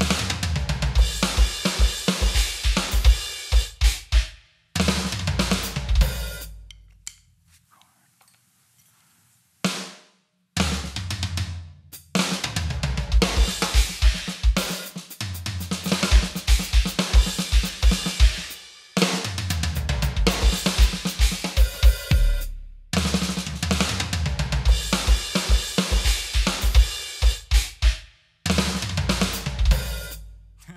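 Roland TD-25 V-Drums electronic drum kit played hard-rock style, with rapid double-bass-drum strokes under snare and cymbals and arena reverb on the kit. About seven seconds in it stops for a few seconds, then the take recorded on the module plays back.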